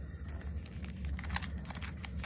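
Origami paper rustling and crinkling under the fingers as a flap is folded and pressed to lock an edge, with a few small crackles about a second in.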